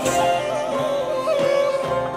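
A small wind instrument held vertically plays a Middle Eastern melody: a steady sustained note decorated with quick wavering trills and turns.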